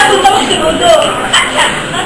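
A girl's voice speaking loudly on stage in short, high-pitched exclamations, echoing in a hall.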